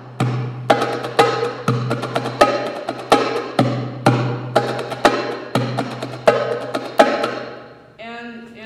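Goblet drum (darbuka) played by hand in a steady Arabic rhythm, the masmoudi: deep bass strokes mixed with sharp, higher strokes at the rim, about three strokes a second, each ringing briefly. The playing stops about a second before the end and the sound dies away.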